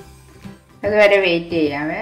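A woman speaking over quiet background music; her speech starts just under a second in.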